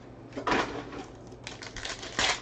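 Foil trading-card pack wrapper crinkling and tearing open in short, irregular crackling bursts, the loudest about half a second in and more near the end.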